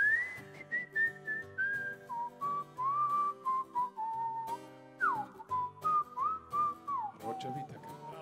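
A man whistling a lilting melody into a microphone over a live band's accompaniment of guitar, bass and drums, with a long downward slide about five seconds in.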